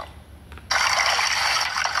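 Water rushing and splashing, a steady hiss that starts abruptly a little under a second in, as mussel ropes are hauled up out of the sea.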